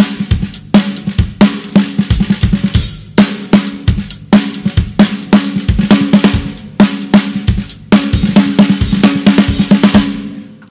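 Drum kit played with sticks: a groove of snare hits with a steady ringing pitch, kick drum, hi-hat and cymbal crashes. It is recorded through an sE Electronics V7x dynamic mic close on a Remo-headed snare, with EQ and mixing.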